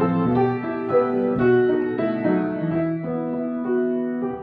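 Upright piano played solo: a slow, lyrical passage of melody over held chords, each new note struck while the earlier ones still ring.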